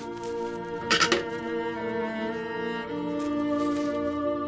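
Soft background score of sustained bowed strings, cello to the fore, holding long notes. About a second in there is a short crackle.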